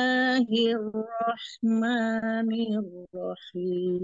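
A woman chanting Quranic Arabic verses in the melodic recitation style, holding long drawn-out vowels with a few short breaks. The teacher judges some of the vowels held too long.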